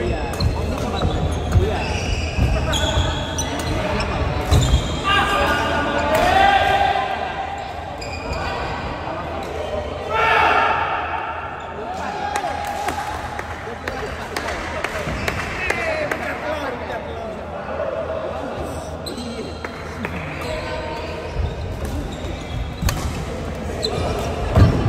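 A doubles badminton rally on a wooden indoor court: irregular sharp knocks from rackets hitting the shuttlecock and players' shoes on the floor, with players shouting a few times mid-rally.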